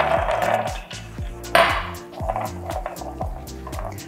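Whole hazelnuts poured from a glass jar onto a lined baking tray, rattling out in two pours: a longer one at first, then a shorter one about a second and a half in.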